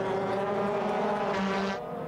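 Audi TT-R DTM race car's V8 engine heard from the car's in-car camera, running hard at a steady pitch, dropping away shortly before the end.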